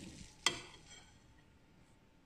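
A single sharp click about half a second in, then faint steady hiss.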